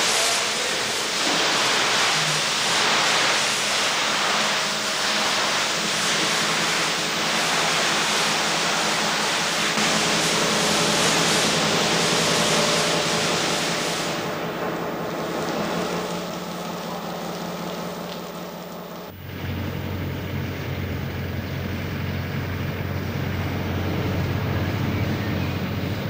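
Loud, steady rushing hiss from depot machinery, thinning out about fourteen seconds in. After a sudden change about 19 seconds in, a low steady drone follows.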